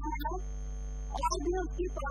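A steady low electrical hum, like mains hum, runs under a woman's narrating voice.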